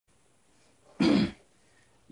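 A man clears his throat once, a short, loud rasp about a second in.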